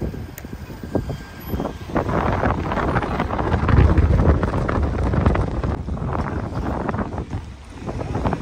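Street traffic going by, with wind buffeting the microphone; loudest around the middle.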